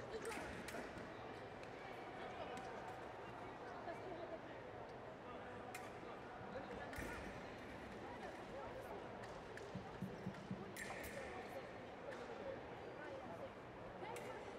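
Fencing-hall background: indistinct voices of people around the hall, with scattered sharp clicks and knocks.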